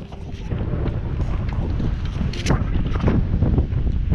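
Wind buffeting the camera microphone, a steady low rumble, with a brief crackle about midway.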